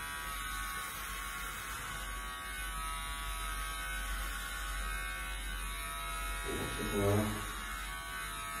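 Electric hair clippers buzzing steadily as they shave a head down to stubble. A short spoken phrase comes in near the end.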